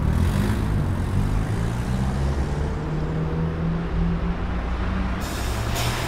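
Street traffic: a heavy vehicle's engine running with a steady low rumble, with a short hiss at the start and another hiss coming in shortly before the end.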